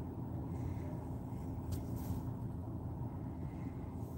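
Steady low rumble of a car's cabin, with a faint steady hum and a couple of brief high clicks about two seconds in.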